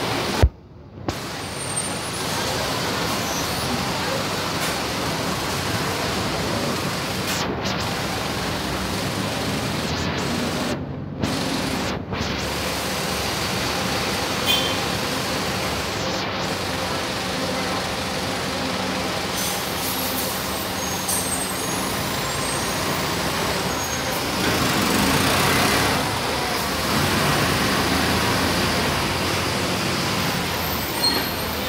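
City buses' diesel engines running at a terminal platform, with an air-brake hiss. The noise gets louder for a couple of seconds about 24 seconds in.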